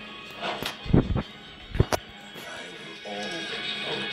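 Film soundtrack music playing from a television speaker, with a last word of film dialogue. Two loud thumps come about a second and just under two seconds in.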